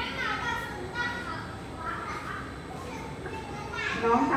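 Children's voices and chatter from the crowd of onlookers, with high-pitched calls rising and falling.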